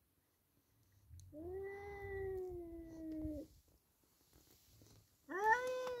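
Two tomcats yowling at each other in a standoff. One long, drawn-out yowl is held low and sags slightly in pitch. Near the end a second yowl starts, rising in pitch.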